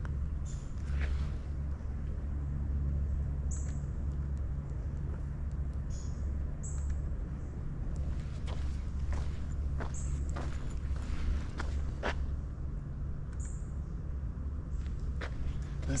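Outdoor ambience with a steady low rumble, scattered soft footsteps and clicks, and about six brief high chirps spread through it.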